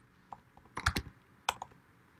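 Computer keyboard keys clicking as text is typed: a few irregular keystrokes, with a quick cluster about a second in.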